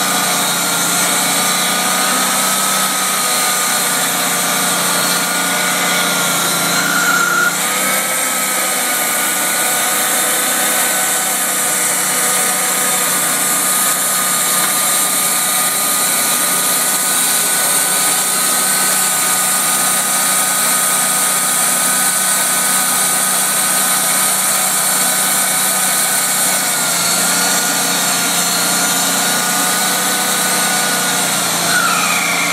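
Sawmill running: a steady whine from the saw and its engine, wavering briefly in pitch about seven to eight seconds in and again near the end.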